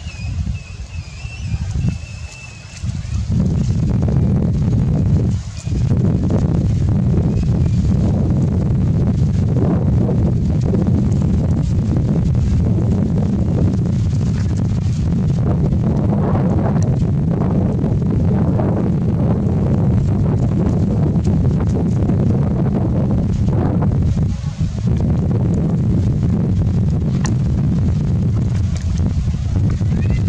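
Wind buffeting the microphone: a loud, steady low rumble that sets in about three seconds in and drops out briefly twice. A thin, wavering high-pitched call is heard in the first couple of seconds.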